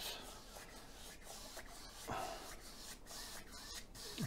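Faint scratchy rubbing of a wide flat bristle brush stroked back and forth through wet acrylic paint on canvas cloth, blending it in, with a slightly louder stroke about two seconds in.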